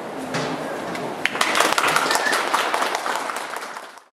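Small audience clapping, starting about a second in over the steady hum of a subway station concourse, then fading out near the end.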